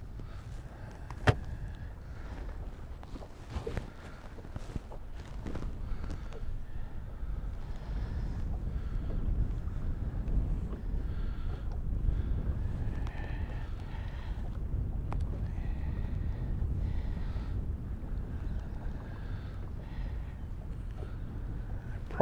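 Steady low rumble of wind on the microphone and water against a small fishing boat on choppy water, with a single sharp click about a second in.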